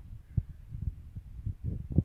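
Wind and handling noise on a phone's microphone while filming on the move: a low rumble with irregular dull thumps, about three a second, the loudest at the very end.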